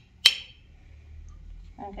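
A metal spoon clinks once, sharply, against an enamel plate while serving mashed potatoes, with a short ring after the hit.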